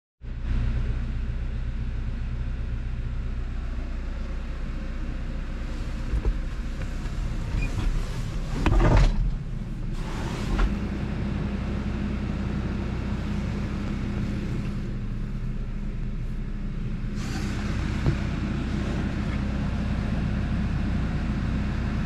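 Case IH tractor engine running steadily with a low hum, with a couple of brief louder knocks about midway.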